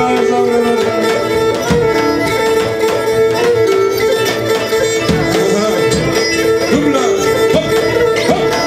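Live Pontic folk dance music: the Pontic lyra plays a bowed melody over held tones, with daouli drum beats and guitar accompaniment keeping a steady dance rhythm.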